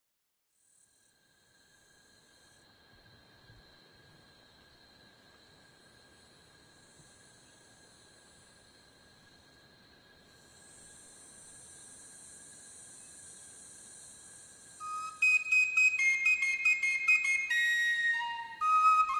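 Faint, steady high-pitched tones with a soft high hiss, then from about three seconds before the end a flute-like wind instrument comes in much louder, playing a melody of held notes.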